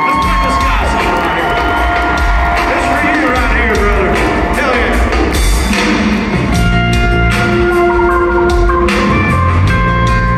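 Live country band opening a song in an arena, over a crowd that cheers and whoops. Held chords come in about six and a half seconds in.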